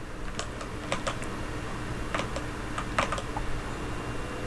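Computer keyboard keystrokes: about a dozen short, irregular clicks in small clusters.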